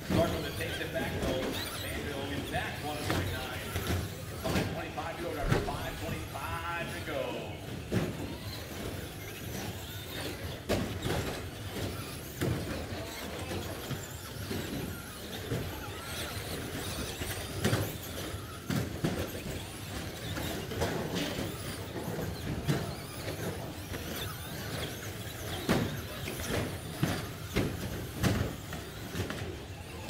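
Traxxas Slash short-course RC trucks racing on an indoor track, with frequent sharp knocks as they land jumps and hit the boards, and a wavering squeal about seven seconds in.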